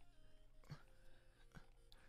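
Near silence: faint room tone with a low steady hum and a soft click or two.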